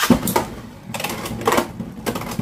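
Beyblade X spinning tops clattering in a plastic Beystadium: a sharp clack at the start, then rattling with further hard knocks about a third of a second, a second and a second and a half in.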